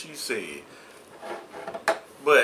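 Short wordless vocal sounds from a man, then a single sharp knock near the end as a hot-sauce bottle is handled on a wooden table.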